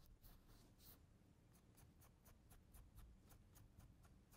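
Faint, soft scratching of a paintbrush stroking across a stretched canvas, short strokes at about four a second, barely above room tone.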